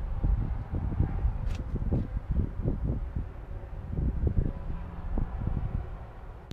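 Wind buffeting the microphone in uneven gusts, with a couple of faint clicks about a second and a half and two seconds in.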